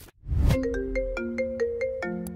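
FaceTime incoming-call ringtone on a computer: a quick run of short chiming notes, about five a second, stepping between pitches. Just before it, about a quarter second in, there is a brief low whoosh.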